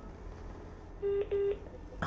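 Two short electronic telephone beeps of the same steady pitch, about a quarter second each, one right after the other, heard over a phone-in line.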